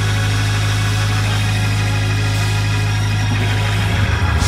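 Hammond organ holding one long sustained chord over a steady low bass note.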